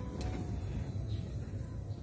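2009 Volkswagen Routan's power sliding door motor running with a steady low hum as the door slides shut, a click shortly after it starts. The door is closing on its button again now that the broken wire in its wiring harness is soldered.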